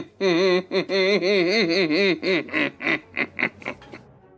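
A man laughing hard into a close microphone: a long run of wavering voiced pulses that break into shorter, fainter bursts near the end and die away.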